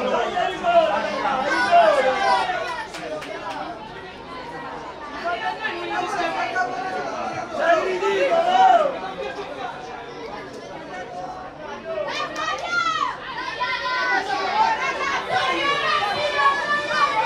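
Many indistinct voices chattering and calling out across a football pitch, with one louder falling shout about twelve seconds in.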